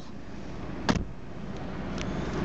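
Saab 9-3 diesel engine idling steadily, heard from inside the cabin, with a single sharp click about a second in.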